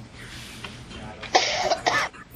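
A person coughing twice in quick succession, about a second and a half in, the first cough the longer.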